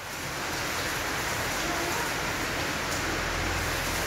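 A steady rushing hiss of noise that swells over about the first second and then holds.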